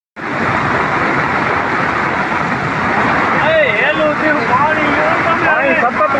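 Loud, steady rush of floodwater pouring across a road, with people's voices coming in over it about halfway through.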